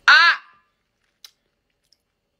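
A woman's short, loud belted vocal 'ah', rising and then falling in pitch over about half a second. A faint click follows about a second later.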